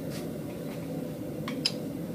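Light metallic clinks about one and a half seconds in, as a hot steel workpiece held in tongs is set into the jaws of a blacksmith's leg vise, over a steady background hum.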